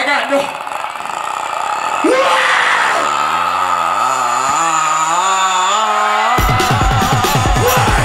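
A hip-hop backing track starting over a festival PA, with the crowd yelling. A wavering melodic line comes in about two seconds in, and a beat with loud bass drums drops in about six seconds in.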